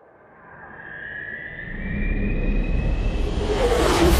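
Trailer soundtrack swelling up from quiet: a few high held tones over a low rumble that grows steadily louder, building into a whooshing surge near the end.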